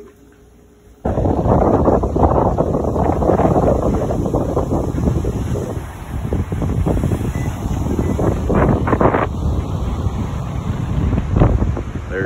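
Strong wind buffeting a phone's microphone, with surf breaking on a beach underneath. It starts suddenly about a second in and stays loud and uneven.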